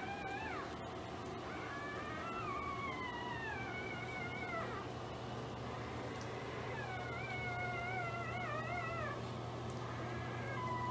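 Four-day-old pit bull puppies crying: thin, high mewing squeals that slide downward in pitch. There is a short cry at the start, a long wavering bout from about a second and a half in to about five seconds, and another from about seven to nine seconds.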